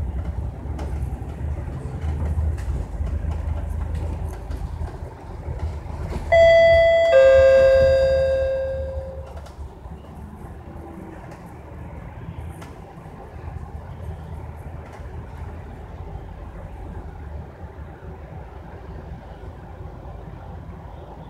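A loud two-tone ding-dong chime from inside a MAN A95 double-decker bus about six seconds in: a higher note, then a lower one that rings and fades over about two seconds, the bus's stop-request bell. The low rumble of the bus's engine and tyres runs underneath.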